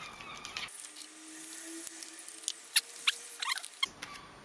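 Faint crackles and sharp little clicks of a paper-wrapped block of butter being unwrapped, its sealing tape peeled off.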